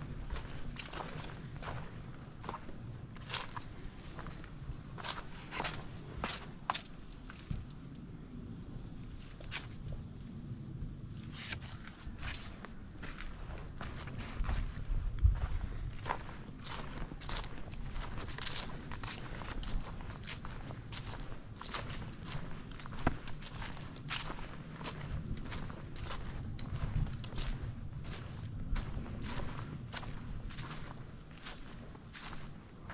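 Footsteps of a person walking at a steady pace along a garden path, about two steps a second, with a short thinner stretch in the steps about a third of the way in. A low rumble runs beneath them.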